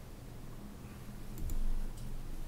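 Two quick clicks about a second and a half in, with a soft low thump: a computer mouse clicking to switch between open documents. They sound over a steady low room hum.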